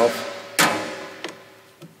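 A jump starter's metal clamp clacks onto a truck battery terminal once, a sharp knock that rings briefly, followed by a couple of small clicks; this is a jump pack being hooked to dead batteries.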